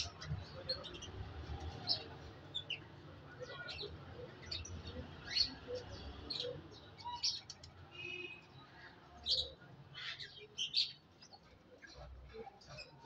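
Birds chirping in a pigeon loft: many short, high chirps scattered irregularly, with one brief ringing call about eight seconds in, over a faint low hum.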